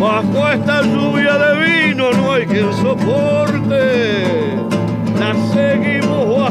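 Acoustic guitar strummed and picked in a steady candombe accompaniment, with a gliding melodic line over it.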